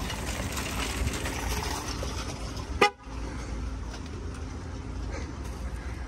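A single very short car-horn toot about three seconds in, over steady parking-lot background noise.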